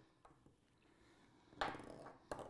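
Low room tone, then about one and a half seconds in a short clatter of small bottles being handled and set down on a countertop.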